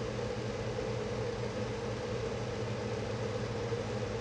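Steady low mechanical hum with a faint even hiss, unchanging throughout: the room's background running noise, like a fan or air-conditioning unit.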